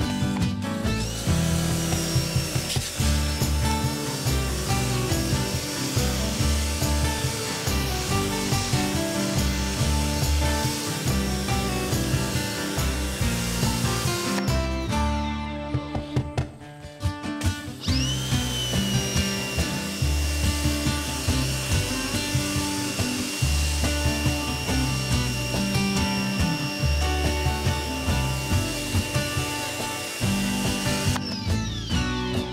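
Pressure washer running with a steady high whine over background music. The whine spins up about a second in, cuts out a little before halfway, spins up again a few seconds later and holds.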